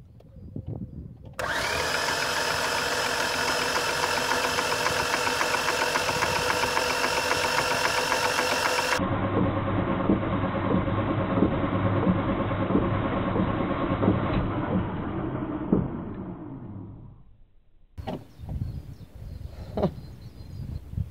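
Starter motor cranking a Renault Clio four-cylinder petrol engine with its cylinder head removed, so the pistons turn over with no compression. The steady cranking starts a little over a second in and winds down over the last few seconds.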